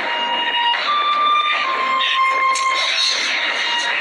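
Film soundtrack mix from an anime sword fight: held high tones that shift pitch a couple of times, over a dense wash of noise with a few sharp strokes.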